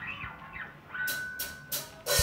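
Drummer counting in on the hi-hat: three evenly spaced light taps, about a third of a second apart, in the second half. Under them a faint held guitar feedback tone, just before the band starts.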